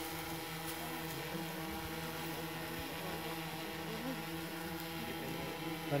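Camera drone hovering, its propellers making a steady hum.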